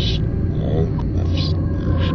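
Short animal calls over a steady low drone, with a brief pitched call a little under a second in.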